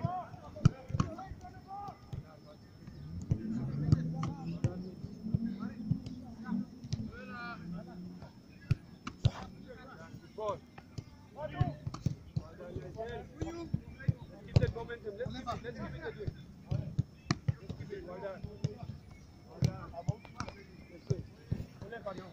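A football being kicked and caught in goalkeeper drills: repeated sharp thuds at irregular intervals, with men's voices talking in the background, most steadily from a few seconds in to about the eighth second.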